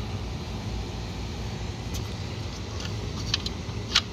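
Steady low mechanical hum with a few small clicks of multimeter test probes touching the metal line terminals of a fused disconnect, the sharpest just before the end. The probes are checking for incoming line voltage to a dead rooftop package unit.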